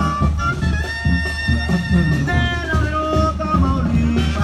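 Mexican regional band music: a melody of held, wavering notes over a steady bass line and beat.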